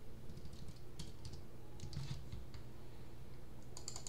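Typing on a computer keyboard: irregular key clicks, busiest in the first couple of seconds and sparser after, over a low steady hum.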